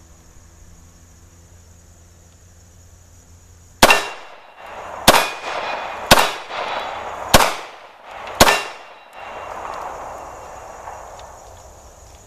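Five shots from a Ruger P95 9mm semi-automatic pistol, starting about four seconds in and spaced about a second apart, each followed by a long rolling echo.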